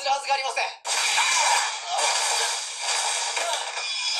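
Television episode audio with all the bass filtered out, so it sounds thin: a short shouted line of dialogue, then from about a second in a sudden, sustained hissing burst of special effects.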